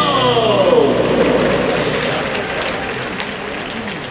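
Stadium PA music ending on a falling pitch slide over the first second and a half. Crowd applause follows and slowly fades.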